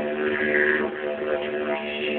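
Didgeridoo played in a steady drone, its tone brightening and darkening as the player's mouth shapes it, strongest about half a second in. Recorded on a cellphone, so the sound is narrow and muffled.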